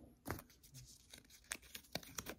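Faint rustling of small paper slips being handled, with a few short, crisp crackles of paper about a third of a second in and near the end.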